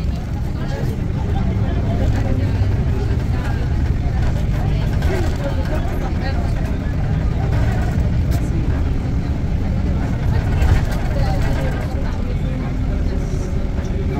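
Steady low rumble of a car's engine and tyres heard from inside the cabin while driving through city traffic, with faint voices talking in the background.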